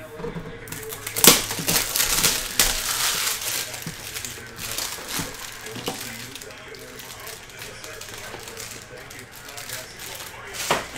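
Plastic shrink wrap crinkling and tearing as it is stripped off a sealed box of trading cards, loudest in the first few seconds. This is followed by quieter rustling and handling of the cardboard box and its foil packs.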